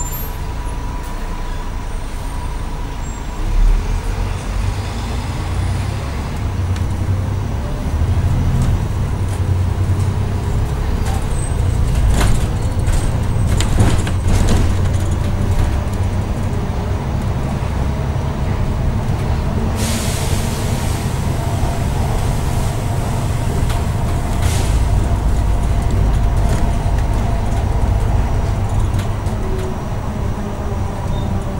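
Interior of a bus on the move: the engine's low, steady rumble, with some rattling clicks around the middle. About two-thirds of the way through comes a short hiss of released air from the bus's air system.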